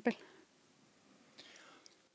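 A woman's voice finishes a word, then near silence, with a faint, short in-breath shortly before the end.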